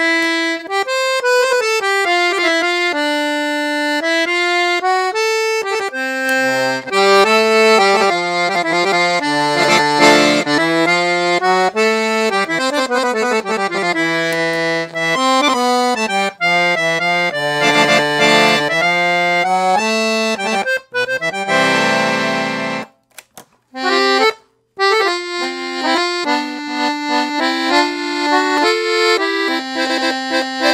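Titano Special 7113 piano accordion with three treble reed sets (low, middle, high) being played: a quick-moving tune of changing notes, with a held chord about two-thirds of the way through, then two short breaks before the playing resumes.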